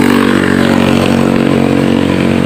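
A small engine running steadily at one speed, a constant drone with no revving.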